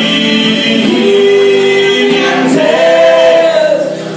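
Live singing with acoustic guitar accompaniment, with long held notes, the second higher than the first.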